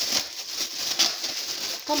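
Thin plastic bag crinkling as it is handled, with a sharper crackle about a second in.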